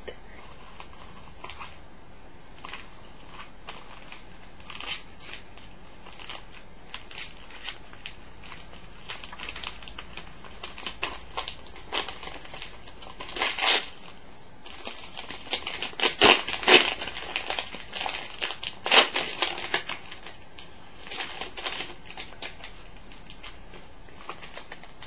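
Gift wrapping paper crinkling, crumpling and tearing as a small present is unwrapped by hand. The rustles come in irregular bursts, soft at first and louder through the middle and later part.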